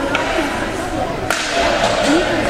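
Hockey puck impact: a single sharp crack about a second and a half in, with fainter clicks around it, over spectators' chatter in the rink.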